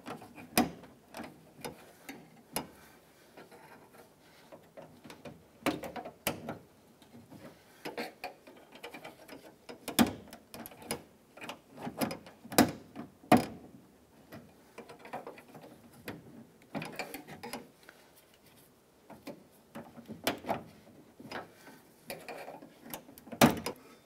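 Irregular metallic clicks and light scrapes of a small angled pick working the spring-loaded retaining clip off the back of a Honda Civic's driver door lock cylinder, with sharper clicks at about ten seconds, twice around twelve to thirteen seconds and again near the end as the clip is worked loose.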